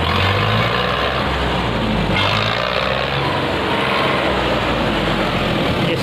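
A tractor's engine idling steadily, a constant low hum under dense outdoor noise.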